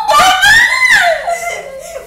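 A high-pitched squealing shriek mixed with laughter, rising to a peak about half a second in and gliding down over the next second, with a few dull thuds early on.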